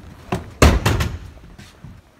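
A door closing: a sharp click, then a loud, heavy thud that dies away over about half a second.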